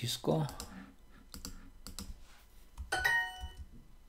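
A few sharp computer clicks as answer tiles are picked, then a short bright chime about three seconds in: a language-learning app's correct-answer sound.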